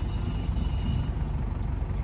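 Vehicle engine and road noise heard from inside the cabin of a slowly moving van: a steady low rumble.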